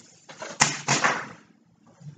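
Tulle netting and a piece of cardboard rustling as the tulle is wrapped around the cardboard by hand, in one burst of about a second with a sharp click in it.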